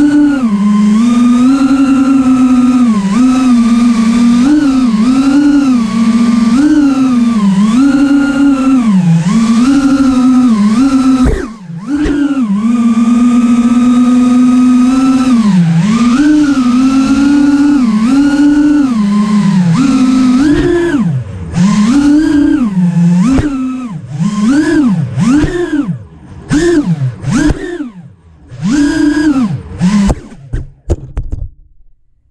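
Cinewhoop quadcopter's brushless motors and ducted propellers whining, the pitch rising and falling constantly with the throttle. About a third of the way in the sound cuts out briefly, and in the last third it comes in short bursts with the motors falling almost silent in between: at low throttle they spool down too far, a sign that the idle motor speed is set too low.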